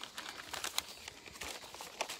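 Faint rustling and crinkling with small scattered clicks: close handling noise.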